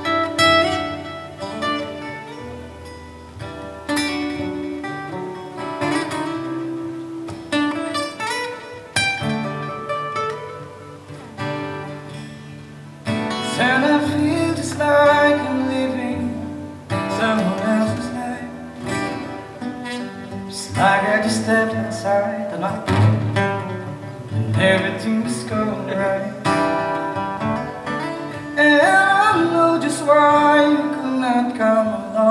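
Acoustic guitar strummed in chords, with a man singing over it from about halfway through.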